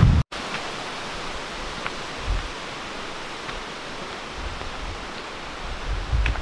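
Steady rushing of a mountain stream running beside the trail, with a few low gusts of wind on the microphone.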